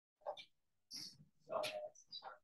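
Faint, indistinct voices starting abruptly out of dead silence: a few short murmured bits with hissing consonants, then one longer voiced sound near the end.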